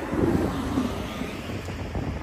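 Wind blowing across a phone microphone over the steady noise of road traffic. A woman's voice hums or sings briefly under a second in, then stops.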